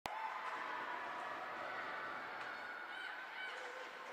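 Ice-rink game sound during play: a steady background of crowd noise with faint held tones and a couple of short pitched calls about three seconds in.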